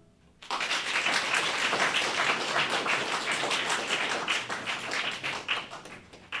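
Applause with individual hand claps, breaking out about half a second in after a brief hush at the end of a violin and piano performance, then thinning a little near the end.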